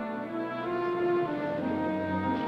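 Orchestral film score: held brass and string notes, with horn chords changing pitch every half second or so.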